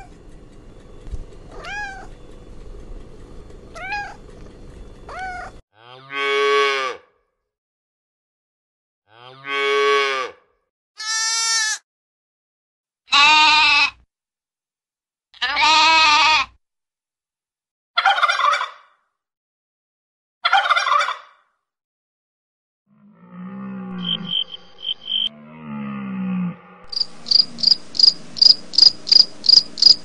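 A young goat bleating, about seven separate wavering bleats spaced a second or two apart, after a few short rising cat meows at the start. Near the end other animal calls follow, ending in a quick series of short high repeated notes.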